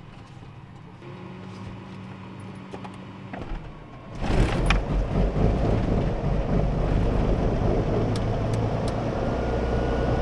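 Cirrus SR22's six-cylinder piston engine starting, heard from inside the cabin: a faint steady hum, then the engine catches about four seconds in and settles into a steady loud run.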